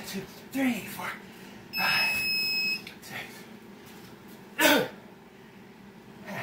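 A man breathing hard and groaning from burpee exertion, with a loud falling groan-like exhale about two-thirds of the way through. A single electronic timer beep, one steady high tone about a second long, sounds a little before the middle.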